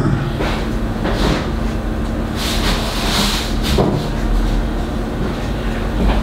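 Off-camera handling of a packed lunch container: a few soft knocks and a rustling, hissy stretch in the middle, over a steady low hum.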